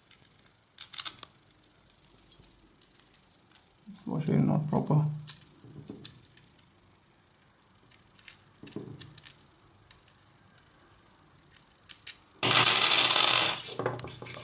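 Small steel parts clicking as an M8 washer and nut are handled and fitted onto the threaded hobbed bolt of a plastic 3D-printer extruder, with a louder rattle of metal parts lasting about a second and a half near the end.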